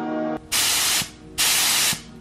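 Gravity-feed paint spray gun with an inline air-pressure gauge blowing compressed air in two half-second bursts as its trigger is pulled, a test of the air flow while the pressure is set, with the cup not yet filled with primer.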